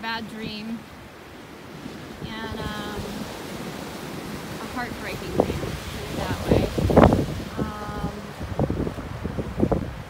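Sea waves breaking and washing over a rocky cobble shore, swelling in the second half with the loudest surge about seven seconds in, with some wind on the microphone.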